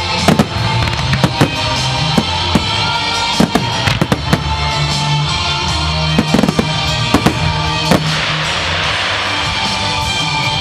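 Aerial firework shells bursting in a rapid series of a dozen or more sharp bangs over loud accompanying music, with a hissing crackle near the end.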